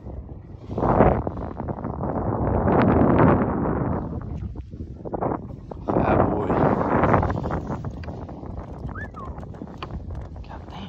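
A chain pickerel flopping in a rubber-mesh landing net, in several bursts of thrashing and knocking, the loudest about a second in and around the third second.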